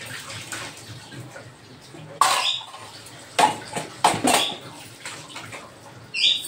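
Dishes being washed in a stainless steel sink: a steady wash of water, with four sharp, ringing clatters of steel utensils, the first about two seconds in and three close together in the second half.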